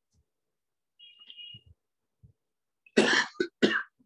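A man coughing, three quick coughs close to the microphone about three seconds in. A faint, short high beep comes about a second in.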